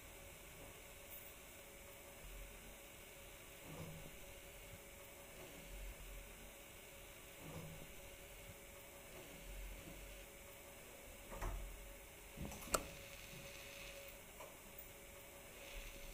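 Quiet indoor room tone: a faint steady hiss and hum, with soft low thuds every couple of seconds and one sharp click near the end.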